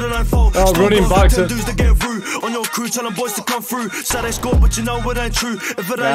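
A drill track playing: a male rapper over a beat with deep bass hits that drop out for moments between phrases.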